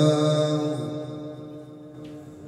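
A man's voice in melodic Quran recitation (tajweed), holding the final drawn-out syllable of a verse as one long steady note. The note fades away gradually during the second half.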